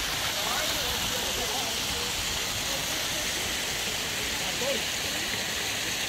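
Mountain stream cascading over rocks, a steady rushing of water, with faint voices talking in the background.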